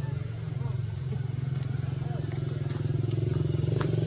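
A motorcycle engine running steadily close by, slowly getting louder.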